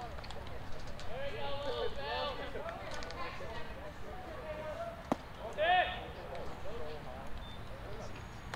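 Players' voices calling and shouting across a baseball field, with a single sharp pop about five seconds in, followed at once by a loud shout.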